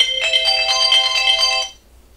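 Phone timer alarm going off, an electronic ringtone of several steady tones, stopped suddenly after about a second and a half: the countdown has run out.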